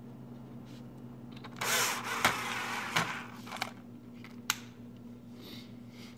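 Hand-tool work on a microwave's control-panel housing: a burst of noise lasting about a second and a half, beginning about a second and a half in, then several sharp clicks and knocks of a screwdriver against plastic and metal parts, over a steady low hum.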